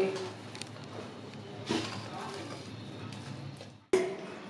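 Faint, soft sounds of a hand mixing grated radish with spices in a steel bowl, over a low steady hum; the sound cuts out abruptly just before the end.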